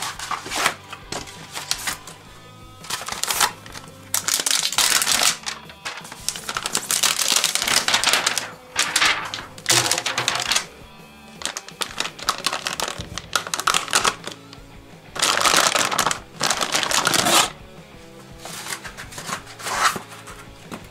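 Background music under repeated loud bursts of rustling and tearing, each lasting up to a couple of seconds, as paper, foam and plastic protective wrap is pulled off a bike frame.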